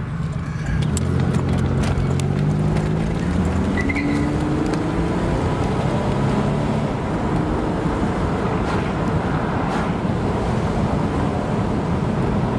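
1991 Buick Reatta's 3.8-litre V6 accelerating, its note rising steadily for about four seconds, heard from inside the car. Then it settles into steady road and wind noise at cruising speed.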